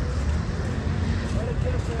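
Busy seafront street ambience: a steady low rumble of traffic and outdoor noise, with faint voices of people passing by.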